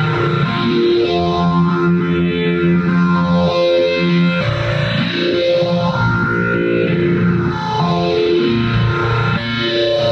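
Rhodes Mark I electric piano played through a multi-effects pedal: held chords and notes that shift every second or two, sounding guitar-like through the effects.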